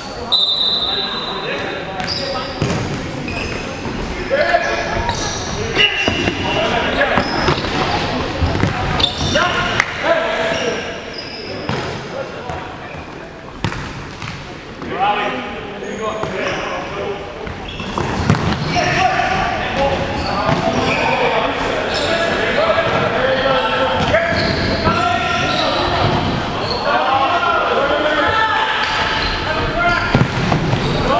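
Futsal being played on a wooden indoor court, the ball kicked and bouncing on the floor with sharp strikes, amid players' shouts and calls that echo around the large hall.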